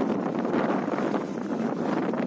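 Steady wind rushing over the microphone of a camera moving along a road, with the running noise of the moving vehicle beneath it.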